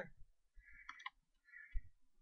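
Faint clicking of a computer mouse and keyboard, with a cluster of clicks about a second in and a soft low thump near the end.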